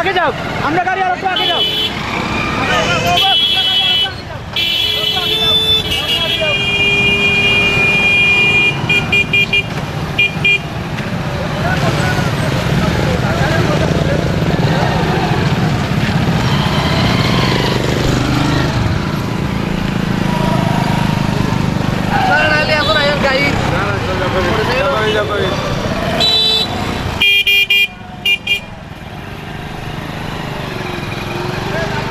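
Busy outdoor crowd-and-traffic noise, with voices among the passing vehicles. A horn sounds in long and short toots through the first ten seconds, ending in quick repeated beeps, and again in a brief burst of rapid beeps near the end.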